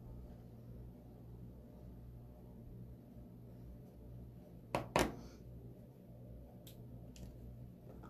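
Quiet scraping of a squeegee around the rim of a small jar of chalk paste, with two sharp clicks close together about five seconds in and a couple of fainter ticks shortly after.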